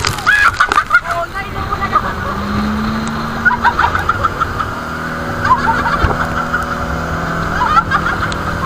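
An outrigger boat's engine running with a steady drone, under loud wind and water noise as the boat crosses rough sea, with people's voices calling out at times.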